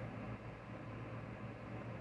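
Faint steady hiss with a low, even hum underneath: background room tone, with no distinct event.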